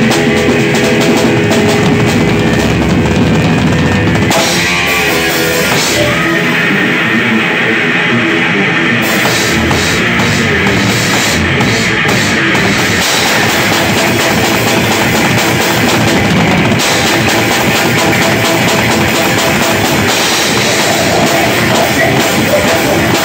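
Live heavy rock band playing loudly, heard from right beside the drum kit, so the drums sit close and prominent in the mix. The high cymbal wash drops away for a few seconds about six seconds in, then returns.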